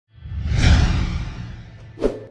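A whoosh sound effect over music swells up out of silence, peaks about half a second in and fades away, with another hit starting right at the end: the opening of the show's closing jingle.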